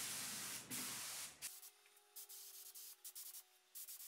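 Compressed-air paint spray gun hissing steadily as it sprays, then cutting off about a second and a half in. Faint brief rubbing sounds follow.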